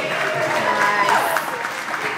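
Audience clapping mid-routine over the performance music, with a voice rising and falling briefly about a second in.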